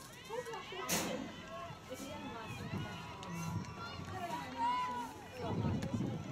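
Distant voices of players and spectators calling and chatting across an open field, with one sharp knock about a second in.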